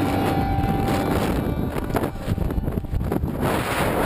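Wind buffeting the camera's microphone during a parachute descent under canopy: a loud, steady rumbling rush with no clear pitch.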